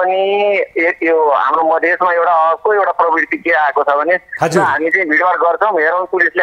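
Speech only: a man talking steadily, with no other sound standing out.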